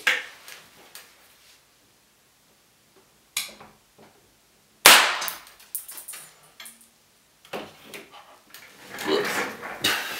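A small electrolytic capacitor, overvolted, bursting with one sharp bang about five seconds in, after a smaller crack a second and a half before.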